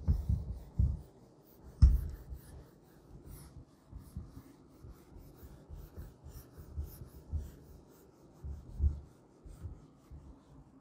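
A whiteboard duster rubbed in quick, irregular strokes across a whiteboard to wipe it clean, with dull thumps mixed in, the loudest about two seconds in.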